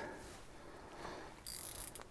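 A spinning reel gives a short, high ratcheting rasp about one and a half seconds in, over faint hiss.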